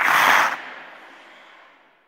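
Intro sound-effect hit: a sudden loud burst of noise lasting about half a second, then dying away over the next second and a half.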